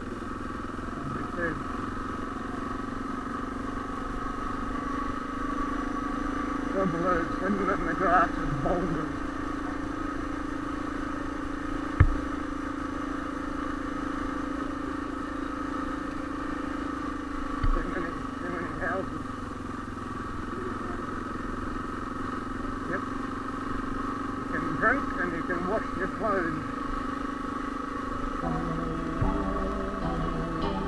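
Suzuki DR650's single-cylinder engine running at a steady speed on a gravel road. A single sharp knock comes about twelve seconds in.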